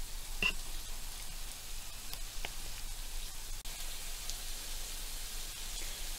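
Cabbage pancake batter frying in melted ghee in a pan, a steady quiet sizzle with a few faint pops as the first side browns.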